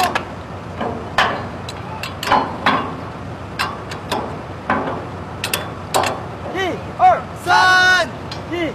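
Irregular sharp metal clanks and knocks from work on a steel drilling derrick. In the last second or two, men start shouting a drawn-out work chant in unison as the crew hauls on a line.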